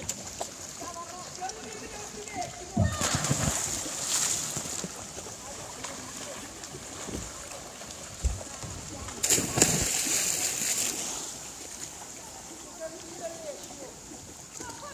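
Splashes of people jumping into the sea from a boat: a loud splash about three seconds in and another about nine seconds in, each followed by a couple of seconds of churning water.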